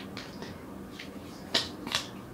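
Tarot cards being handled and drawn from a deck: a few light, sharp card flicks and taps, the loudest about a second and a half in.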